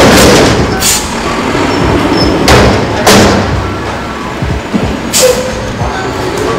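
Garbage truck working just outside: a low engine rumble broken by several loud bursts of noise and thuds, the first right at the start, others about a second in, around two and a half to three seconds, and near five seconds.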